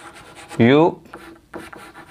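Chalk scratching on a chalkboard in short strokes as a word is written. A man says the word "you" about half a second in.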